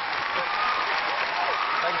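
A large theatre audience applauding steadily, with a voice faintly heard through it.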